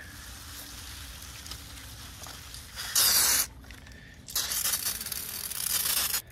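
Battery-powered two-gallon pump sprayer spraying fungicide from its wand: a quieter steady hiss, then a short loud burst of spray about three seconds in and a longer loud burst from about four and a half seconds on.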